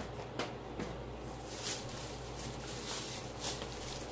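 Plastic shopping bags and packaging rustling and crinkling in a few short bursts as items are handled, over a steady low hum.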